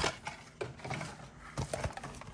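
A few faint, sharp clicks and taps of small plastic packaging being handled and worked open.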